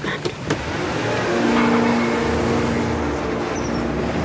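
A car engine running as the car rolls into a garage, swelling from about a second in, with two or three sharp clicks near the start.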